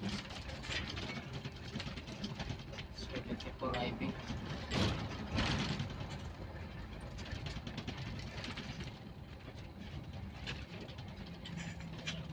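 Engine and road noise from inside a moving vehicle, a steady low rumble, with indistinct voices now and then.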